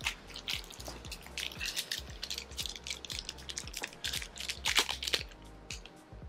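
Small mystery pin pack being opened and handled by hand: irregular crinkles and sharp little clicks of packaging, over soft background music.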